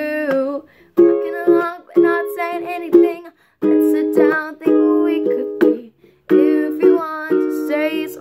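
Ukulele strummed in a rhythmic chord pattern, several short sharp strums a second, between sung lines of a pop song. A held sung note fades out about half a second in.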